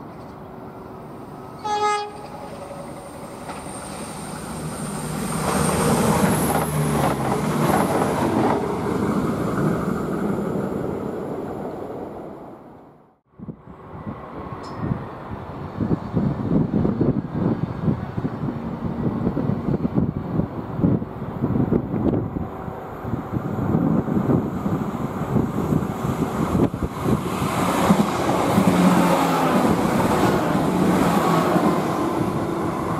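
Irish Rail 22000 Class diesel InterCity Railcar gives one short horn blast about two seconds in, then runs by and fades away. After a sudden cut, another 22000 Class railcar approaches and passes close at speed, with a rapid clatter of wheels on the rails growing louder toward the end.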